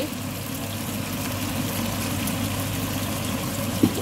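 Chicken and tomatoes cooking in oil in a pan: a steady hiss of simmering over a low hum, with one short knock near the end.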